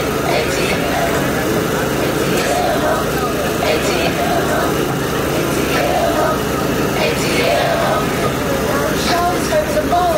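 A steady motor or engine running throughout, under indistinct voices in the background.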